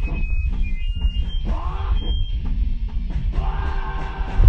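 A rock band playing live and loud, electric guitar over steady drums, with the singer's voice through a microphone, captured by a phone. A few brief high-pitched squeals sound in the first two seconds.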